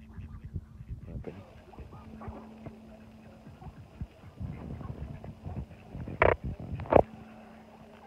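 Mallard ducks quacking close by, with two short, loud quacks about six and seven seconds in over a low, uneven rumble.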